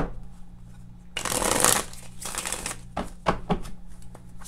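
A deck of oracle cards being shuffled by hand. A loud rush of shuffling comes a little over a second in, then a string of short, quick card snaps follows.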